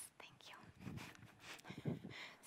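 Quiet whispered speech from a woman, with a few small clicks.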